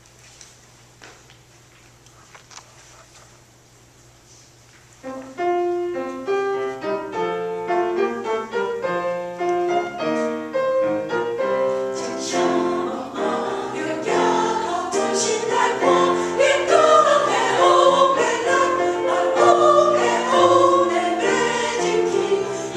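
Quiet room tone for about five seconds, then a piano introduction starts. Around the middle a mixed church choir comes in, singing in Taiwanese over the piano, and the music grows fuller and louder.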